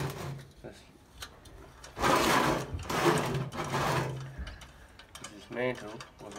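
Metal rattling and scraping as the top cap of a Coleman NorthStar lantern is worked by hand, loudest for about two seconds from two seconds in.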